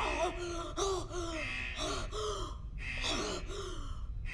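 A woman gasping for breath, a quick run of short voiced gasps with a brief pause about two and a half seconds in.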